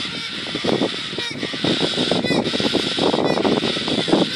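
A group of galahs (rose-breasted cockatoos) calling, a steady stream of short, overlapping calls.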